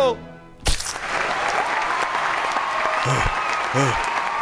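Backing music winds down with its pitch sliding downward and cuts off; after a brief gap a thump, then steady audience applause. Near the end a breathless voice pants 'uh, uh, uh'.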